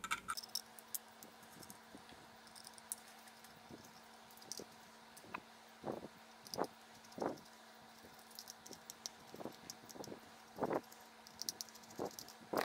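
Faint clicks and scrapes of a precision screwdriver backing tiny screws out of the chip board inside a metal box mod, with a few louder ticks scattered through.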